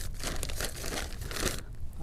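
Black plastic nursery bag crinkling and rustling in the hands in a few irregular bursts as it is handled to take a pitaya cutting.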